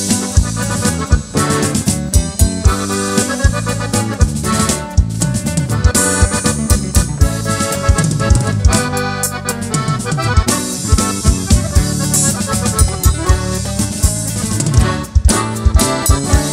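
Norteño band playing an instrumental passage without vocals: a button accordion carries the melody over electric bass, guitar and a drum kit keeping a steady beat.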